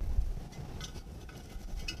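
Faint handling sounds of barked wire being looped around a clay pot: a soft low thump near the start, then a few light ticks and scrapes.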